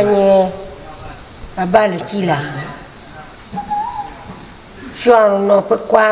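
Steady high chirring of crickets, with a woman speaking in short phrases at the start, around two seconds in and again near the end.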